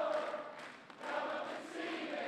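Audience singing along together like a choir, with a brief lull about a second in before the voices pick up again.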